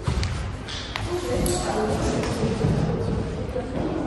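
Faint voices in a large, echoing hall, with a few sharp knocks in the first second.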